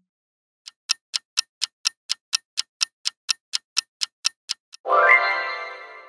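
Clock-ticking countdown sound effect, about four ticks a second for some four seconds, then a ringing reveal chime that fades away.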